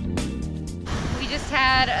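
Background music with plucked guitar that cuts off suddenly a little under a second in. Then comes wind noise on the microphone, with a woman starting to talk over it.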